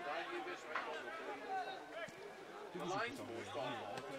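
Mostly speech: men's voices around an outdoor football pitch, with a male commentator starting to speak again near the end.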